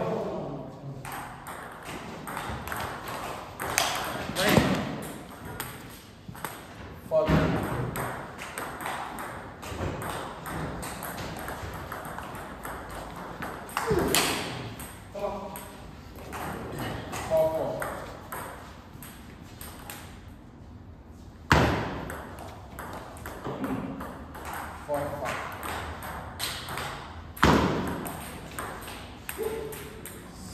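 Table tennis rallies: the celluloid-type ball clicking back and forth off bats and table, with several louder knocks spread through.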